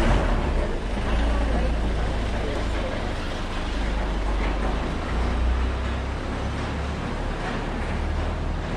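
A motor vehicle engine running close by: a steady low rumble with street noise over it, much louder than the scene around it.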